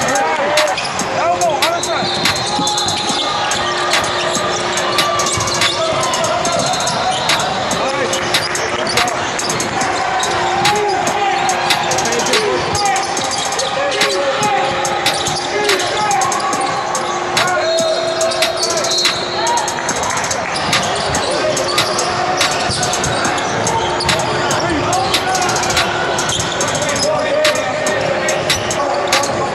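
Basketballs bouncing on a hardwood gym floor during a game, with repeated short sharp bounces throughout, sneakers squeaking and spectators talking in the background.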